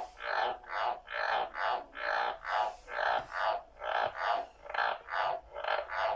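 Frogs calling: a steady, unbroken run of short croaks repeated about two to three times a second.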